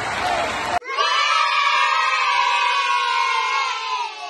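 A crowd cheering, with applause-like noise, cut off abruptly about a second in, then a loud sustained cheer of many voices held steady that begins to fade near the end.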